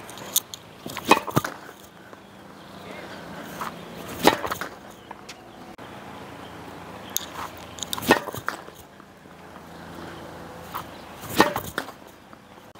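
Tennis serves: a sharp knock every few seconds as a racket strikes a tennis ball, with further knocks of balls hitting the net and bouncing on the hard court. The serves are dropping into the net.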